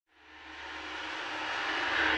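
A swell of hissing noise rising steadily from silence, a riser effect opening the trailer's soundtrack.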